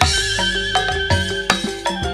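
A Cirebon-style gamelan ensemble playing: struck metallophones and gongs in a steady rhythm. A deep low stroke at the start rings on under a wavering high melody line.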